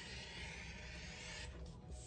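A hand cutter drawn along a ruler, slicing through sublimation paper on a cutting mat: one steady scraping stroke that stops about one and a half seconds in.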